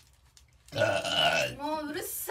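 A loud, drawn-out human burp starting about a second in and lasting roughly a second, its pitch wavering and gliding toward the end.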